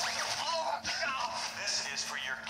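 Film trailer soundtrack, music with voices, playing through a portable DVD player's small built-in speaker, with a steady faint hum underneath.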